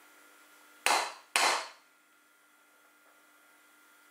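Two loud, sharp knocks about half a second apart, each dying away quickly.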